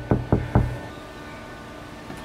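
Quick knocks on a glass window, three or four in a row about a fifth of a second apart, over the first half-second, then room tone.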